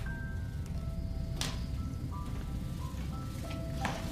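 Film underscore: a slow line of single held high notes, chime-like, stepping from pitch to pitch over a steady low rumbling drone, with one short sharp noise about a second and a half in.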